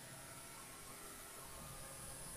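Faint steady hiss with a low hum underneath: room tone.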